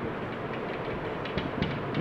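Marker pen writing on a whiteboard: a few faint strokes in the second half over a steady background hiss.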